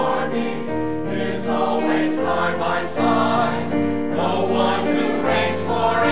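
Mixed church choir singing, holding sustained chords that change every second or so.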